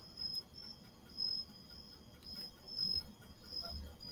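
Faint high-pitched chirping in uneven pulses, with a few soft low thumps.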